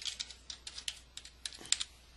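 Typing on a computer keyboard: a quick, uneven run of key clicks that stops shortly before the end.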